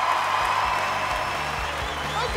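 Live band music with a drum beat as the audience cheers and applauds. A long held note rides over it through the first second and a half, then fades.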